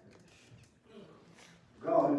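A quiet pause with only faint room sound, then near the end a person's voice breaks in loudly with a sudden exclamation.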